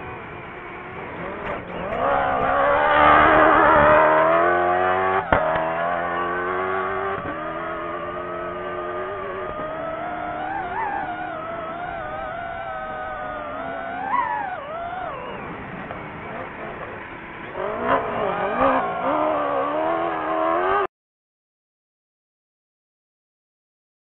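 Toyota cross-country rally car's engine at full effort, revving up and dropping again and again as it shifts gears, with a sharp knock about five seconds in. The sound cuts off suddenly near the end.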